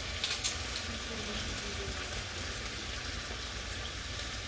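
Diced carrots and onion sizzling in bacon fat in a pot on the stove, a steady hiss with a few light clicks about half a second in.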